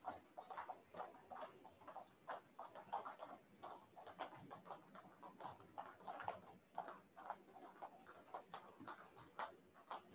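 Several people skipping jump rope on foam mats: faint, irregular taps of ropes striking the mat and bare feet landing, several a second and overlapping from different jumpers.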